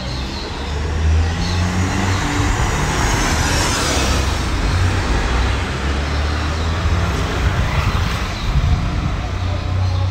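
A motor vehicle's engine running close by on the street over general traffic noise, getting louder about a second in and staying up.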